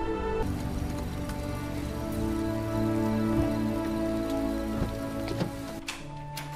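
Steady rain under soft background music of long held notes.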